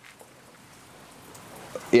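Faint, steady rain falling, heard as a soft even hiss.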